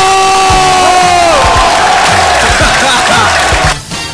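Crowd cheering and shouting in reaction to a dunk, with one long held shout whose pitch falls away about a second and a half in, over background music with a beat. The cheering drops off near the end.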